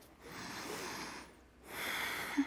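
A woman breathing audibly: one long breath lasting about a second, then the next breath beginning near the end.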